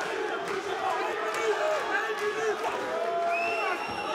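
Arena crowd shouting and cheering, many voices calling out over one another.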